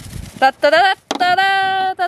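A woman's voice making wordless vocal sounds: two short pitched sounds, then one long held note, like a sung or drawn-out "ooh".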